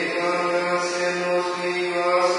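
Chanted singing in a Catholic Mass: long, steady sung notes with short breaks between them.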